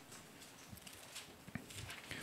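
Faint rustling of thin Bible pages being turned by hand, with a few soft taps.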